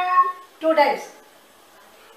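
A child's high voice finishes a held chanted note, and about half a second later comes a short high call that slides down in pitch; the last second is quiet.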